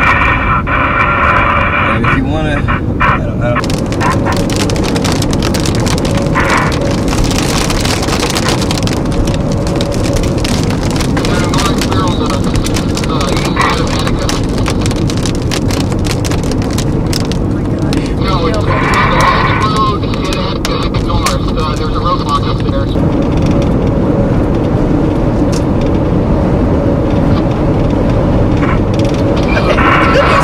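Heavy, steady rumble of wind and car noise heard from inside a car, with short muffled voices now and then. A stretch of rapid ticking and crackling runs from a few seconds in to about ten seconds in.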